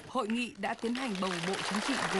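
A voice speaking over applause from a group of people. The clapping comes in about half a second in and goes on as a dense, steady patter under the voice.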